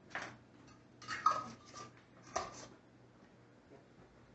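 A few short scrapes and knocks of glass canning jars being handled on the counter as pickling cucumbers are packed into them, with one sharper clink about a second in.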